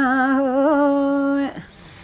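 A woman's voice holding one long, unaccompanied sung note in a Mường folk song, with a slight waver. The note breaks off about one and a half seconds in, leaving a short, much quieter pause.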